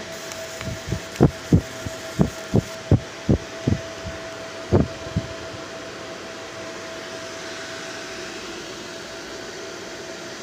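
Steady hum of a laser marking machine's cooling fan with a thin, steady whine. Over it, from about a second in until about five seconds in, come about ten short, dull thumps at uneven intervals.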